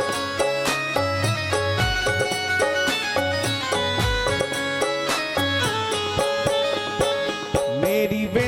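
Instrumental interlude of a live Hindu devotional bhajan: a held, repeating melody over a steady drum beat, with a voice starting to sing right at the end.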